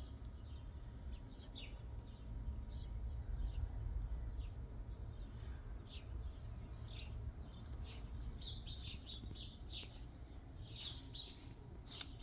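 Small birds chirping in short, scattered calls, over a low steady rumble.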